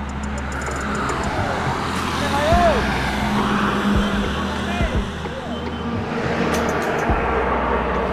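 Highway traffic passing close by: a steady low hum of engines and tyre noise that swells as vehicles go past, loudest around two and a half seconds in and again near seven seconds.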